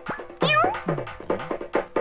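Comic film background music: a run of drum strokes, each with a pitch that drops, and a short rising, meow-like note about half a second in.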